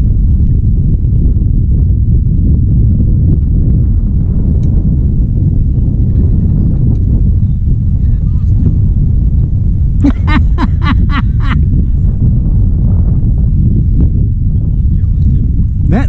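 Wind buffeting the kayak-mounted camera's microphone: a loud, steady low rumble. About ten seconds in there is a quick run of about six short pitched calls.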